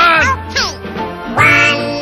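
Sped-up, high-pitched chipmunk-style cartoon voices over music with steady bass notes. One voice comes right at the start and another about 1.4 s in.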